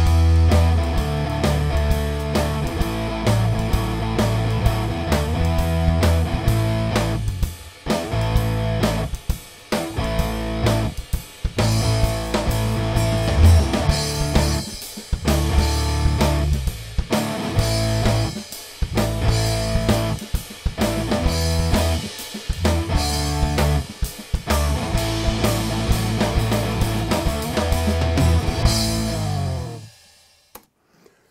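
Playback of a rock arrangement: a drum kit, electric guitar and an electric bass guitar through the Ampire amp-simulator plugin, with the bass notes strong underneath. The music cuts off abruptly at the very end.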